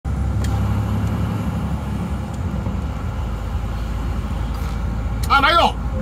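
Truck engine running with a steady low rumble, heard from inside the cab.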